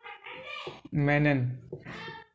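A man's voice making drawn-out vocal sounds without clear words, the loudest a long held vowel about a second in.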